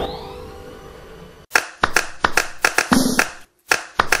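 A ringing intro chime fading away, then from about a second and a half in a dry beat of hand claps and snaps starting up, the opening rhythm of the song, with a brief drop-out near the end.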